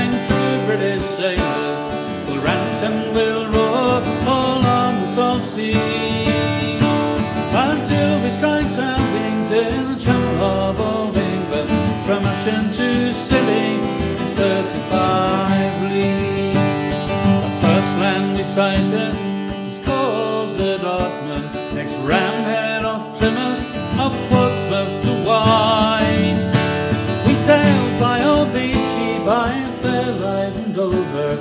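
Acoustic guitar strummed solo in a folk sea song, an instrumental passage with no singing.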